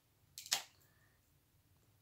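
A brief plastic click about half a second in, from an open Blu-ray case being handled; otherwise quiet room tone.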